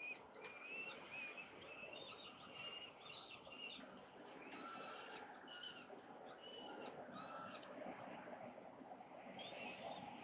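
Peregrine falcons calling over a steady hum of city noise. A rapid string of short, high, harsh calls is followed by longer drawn-out calls about five and seven seconds in, then a pause before the calling resumes near the end, typical of young falcons begging during a feeding.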